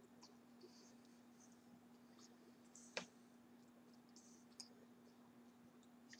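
Near silence over a faint steady hum, broken by a few small clicks from eating and licking fingers, with one sharper click about three seconds in.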